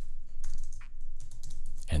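Keystrokes on a computer keyboard as a file name is typed, a few separate key clicks.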